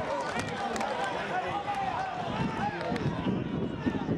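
Several voices shouting and calling over one another across a football pitch, from players and spectators, with a few sharp clicks among them.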